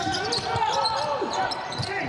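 Basketball dribbled on the court, a run of short bounces, with faint voices underneath.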